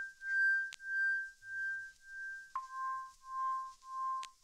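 A sparse break in a lofi track: one soft, pure electronic tone pulsing about every 0.6 s, stepping down to a lower note about two and a half seconds in, with a faint click now and then.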